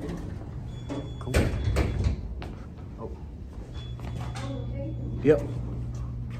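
Sliding doors of an Otis hydraulic elevator at the ground floor, with a sharp knock about a second and a half in and a steady low hum that starts a little past halfway.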